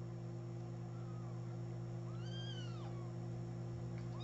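Young kitten mewing: a faint short mew about a second in, then a louder high-pitched mew that rises and falls, over a steady low hum.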